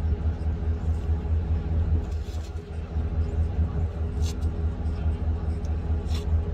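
Steady low rumble of a car engine running, with faint clicks about two and four seconds in.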